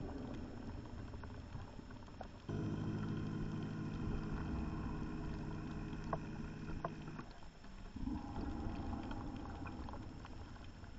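Scuba diver breathing through a regulator underwater: a hissing inhale, then about two and a half seconds in a long exhale lasting nearly five seconds with a steady buzzing tone, which cuts off suddenly. Another hissing inhale follows near the end.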